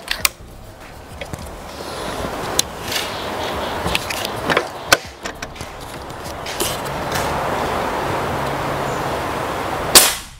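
A steady hiss that grows slowly louder over several seconds, with a few faint clicks. Right at the end comes a single sharp, loud shot from a PCP Predator Mini pre-charged pneumatic air rifle being fired at a brick-fragment target.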